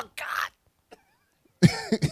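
A man laughing into a microphone: a short breathy, cough-like burst, a pause of about a second, then voiced laughter starting again near the end.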